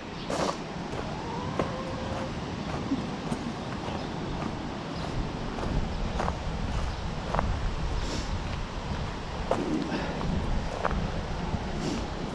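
Wind buffeting the microphone, a steady low rumble, with a few faint scattered clicks.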